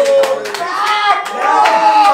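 A few men exclaiming and whooping in a small, hard-walled room, mixed with several sharp hand claps and slaps.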